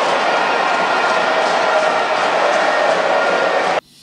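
A large stadium crowd cheering, heard as a steady, dense din that cuts off abruptly near the end.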